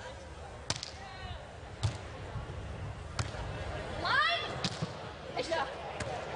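Beach volleyball rally: sharp slaps of hands on the ball, first the serve and then a pass and a set roughly a second apart, with more hits near the end. A player's rising shout comes about four seconds in.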